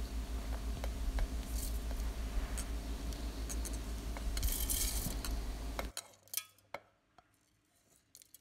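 Roasted dal, pepper and coriander seeds being pushed off a plate by hand and falling into a stainless-steel mixer-grinder jar: scattered light clicks and a short patter of grains a little before five seconds in, over a low steady hum. The sound cuts out about six seconds in, leaving two faint clicks.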